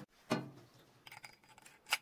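Metal parts being handled: one dull knock about a third of a second in, then a few faint clicks and a sharper click near the end.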